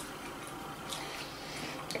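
Faint chewing and soft mouth clicks from people eating breaded chicken, over a low steady room hiss.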